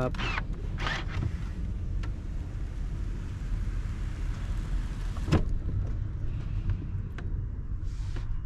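Electric motors of a 2019 Mercedes GLS450's power-folding third-row seats running steadily as the seatbacks rise, ending with a sharp clunk about five seconds in.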